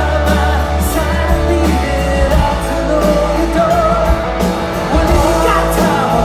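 Live rock band playing loud: a man sings lead over electric guitar, bass and drums.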